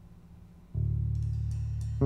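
Instrumental band music: a faint low hum, then about three quarters of a second in, a sudden loud entry of sustained low bass tones with drum and cymbal strikes over them.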